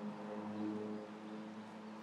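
Faint background music: a soft, sustained chord of low held tones.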